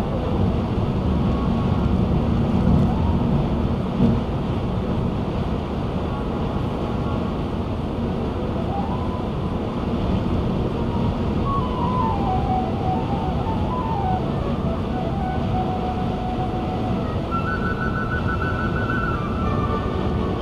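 Steady road and wind noise of a car cruising at highway speed, with a sparse, slow melody of music over it.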